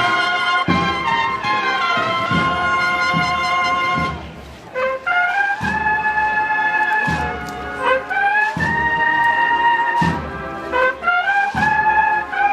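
Brass band playing a Holy Week processional march, sustained brass chords and melody over regular low beats. The music drops away briefly about four seconds in, then comes back in.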